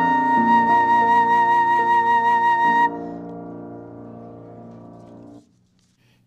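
Flute holding the long closing note of a piece with vibrato over a sustained accompaniment, stopping about three seconds in. The accompaniment then dies away over the next two seconds or so.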